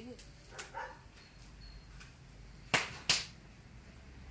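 Two sharp smacks, like hand claps, about a third of a second apart near the end.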